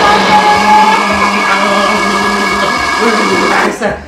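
Small corded handheld electric tool running with a loud, steady motor buzz, cutting off suddenly near the end.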